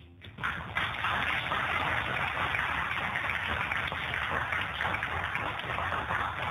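Audience applause, breaking out about half a second in and going on steadily.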